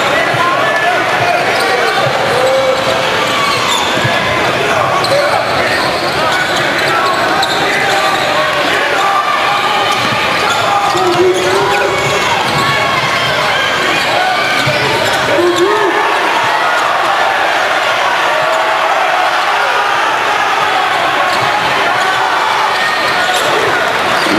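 Game sound from a basketball arena: a basketball bouncing on the hardwood court under the steady hubbub of the crowd's voices.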